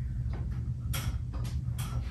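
A handful of light, sharp clicks and taps from a bathroom sink as its fittings are handled, about five spread over two seconds, over a low steady hum.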